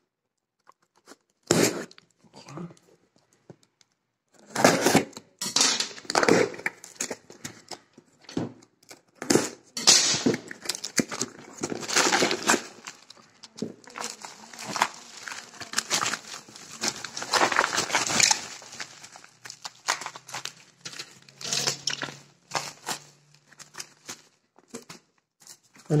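Parcel packaging being opened by hand: packing tape pulled from a cardboard box, then a plastic mailer bag and bubble wrap crinkled and rustled. A few short tearing and rustling sounds at first, then dense, irregular crinkling from about four seconds in.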